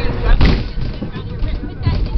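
Low rumble of a flume-ride boat moving along its channel, heard with wind and handling noise on a camera carried aboard. There is a sharp thump about half a second in, and voices in the background.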